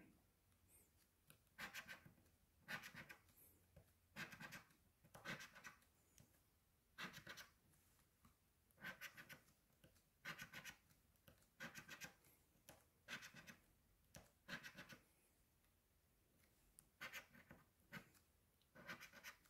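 A coin scratching the coating off a paper lottery scratch-off ticket, faint, in short bursts of quick strokes about a second apart, with a longer pause shortly before the end.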